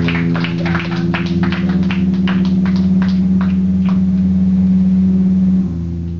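An electric guitar drone rings on steadily through the amp while drum hits fall a few times a second, thinning out and stopping after about three and a half seconds. The drone drops a little in pitch near the end.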